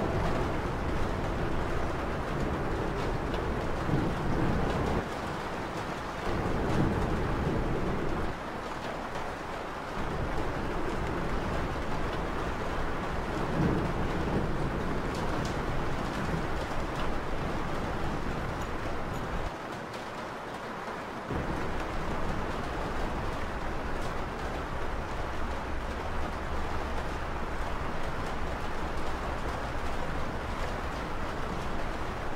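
Steady rain-like noise with a few low rumbles, like distant thunder, a few seconds in, again around seven seconds and near the middle, and brief quieter lulls between them.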